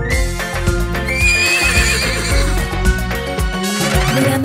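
Upbeat children's-song backing music without singing, with a cartoon horse whinny sound effect, a wavering high neigh, about a second in.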